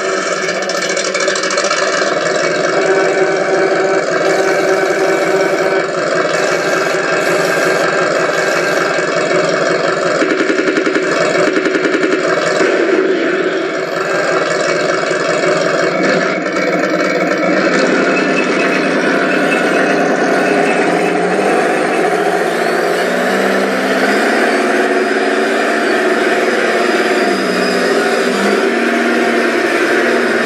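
Simulated tank engine sound from the sound unit of a Tamiya 1/16 RC Pershing, played through its onboard speaker just after switch-on. It runs at a steady idle at first, then its pitch shifts up and down over the last ten seconds or so as the model begins to drive.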